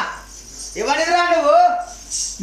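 A man's voice sings or chants one drawn-out phrase, starting about three quarters of a second in and lasting about a second, with a light metallic jingling around it.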